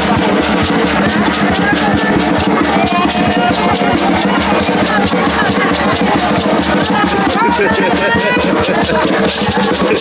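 Live drum music with rapid, steady drumming and rattling shakers, played for a masked dance, with crowd voices calling over it in the middle and later part.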